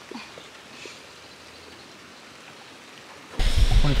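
Faint, steady outdoor background hiss. Near the end it jumps to a much louder low rumbling noise, wind on the microphone, as a voice begins.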